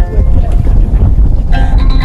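Wind buffeting the microphone, a loud low rumble throughout. About one and a half seconds in, a voice singing long, wavering notes comes back in over it.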